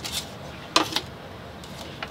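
Two brief light clicks of tableware being handled, a faint one at the start and a sharper one a little under a second in, over a low steady background hush.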